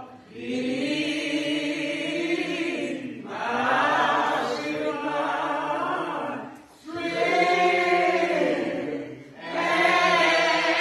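A group of voices singing together in long held phrases, with a short break for breath about every three seconds.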